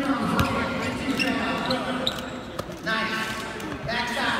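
Basketballs bouncing and being caught on a hardwood court: a few separate sharp thuds, over voices and chatter in a large, echoing arena.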